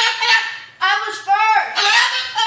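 White cockatoo calling loudly, several pitched calls one after another with brief gaps, as it flaps its wings and bobs on top of its cage.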